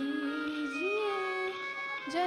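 A Hindi devotional song (bhajan) performed live with accompaniment: a long melodic note held, then sliding up about halfway through and held again.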